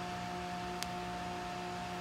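Steady background machine hum made of a few fixed tones, with one faint click a little under a second in.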